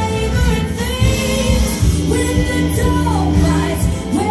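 A song: a singing voice holding drawn-out notes over a backing track with a steady bass line.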